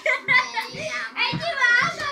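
A young girl's high voice, excited and playful, with music behind it.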